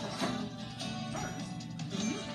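A cartoon dog's barks and yips, the voice of Pluto, over cartoon background music, played through a television's speakers.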